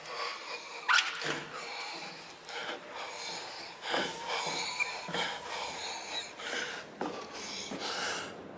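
A person sliding and shuffling down a dry fibreglass water-slide tube: body and clothing rubbing, scuffing and bumping against the slide, with hard breathing from the effort. A sharp knock about a second in is the loudest sound.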